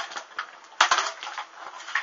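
Burning swimsuit fabric crackling in the flames: scattered sharp crackles and pops, with a dense cluster about a second in and another near the end.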